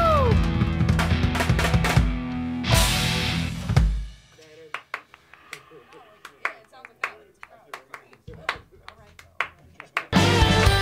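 Live rock band finishing a song: a held sung note slides down, drums and guitars play the closing hits, and a last cymbal-laden hit rings out and dies away about four seconds in. After that come scattered hand claps and faint voices.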